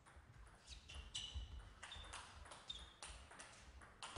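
Table tennis rally: the celluloid ball clicking faintly off the bats and table several times, some hits with a short high ping, over a low hall rumble.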